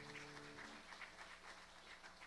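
A grand piano's last chord dying away within the first second, followed by faint, scattered light ticks.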